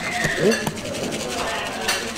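Indistinct voices with a couple of short sharp clicks, one in the first second and one near the end.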